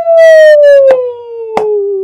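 A woman's long, loud vocal cry: one held note that slowly falls in pitch, with two sharp hand claps cutting across it about a second and a second and a half in.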